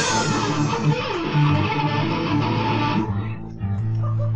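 Grunge/alternative rock band recording with strummed electric guitar and bass. The bright full-band sound stops about three seconds in, leaving a low note ringing.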